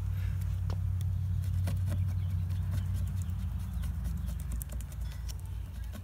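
Faint scratching and ticking of a razor blade working foam adhesive off wet mirror glass, over a steady low hum that fades near the end.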